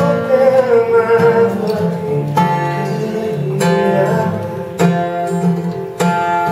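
Acoustic guitar strummed live, under a man's sung note that is held with a waver over the first second or so. Then the guitar plays alone, with strong chord strokes about every second and a quarter, left to ring between them.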